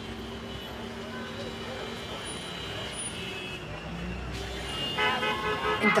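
Road traffic noise: a steady hum of cars on the street, with more low rumble about four seconds in.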